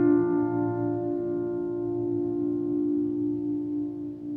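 Instrumental music: one piano chord rings on and slowly fades, its tones wavering slightly against each other.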